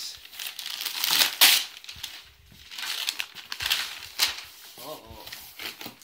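Gift wrapping paper being torn and crumpled off a cardboard box by hand, in irregular rustling bursts, loudest about a second and a half in. A child's voice says "oh" near the end.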